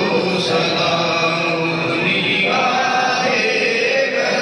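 A group of men chanting a devotional recitation together in long, held notes.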